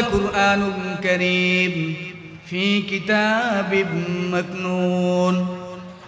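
A man reciting a Quranic verse in melodic, drawn-out style. He sings two long phrases of held notes with ornaments, the second fading away near the end.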